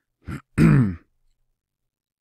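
A man clearing his throat: a short catch followed by a longer voiced clearing, about half a second in.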